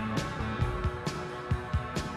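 Rock band playing live in an instrumental passage: electric guitars and bass over a steady, even drumbeat, with no vocals.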